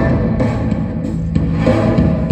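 Loud music for a stage dance, with deep bass and a few sharp drum hits.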